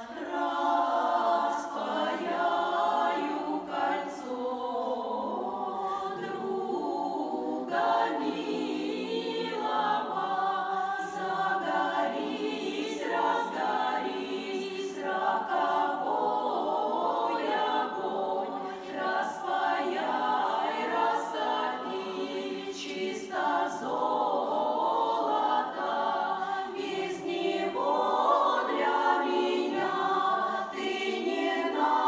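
Russian women's folk vocal ensemble singing a song together in several voices, unaccompanied.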